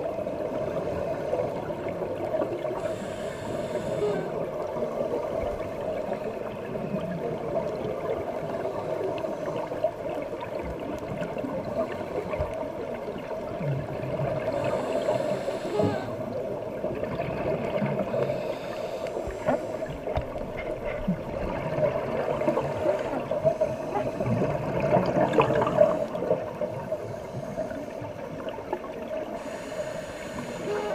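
Muffled underwater sound picked up through a camera's waterproof housing: steady water noise with gurgling from scuba divers' regulators, and a few brief hissing bursts of exhaled bubbles.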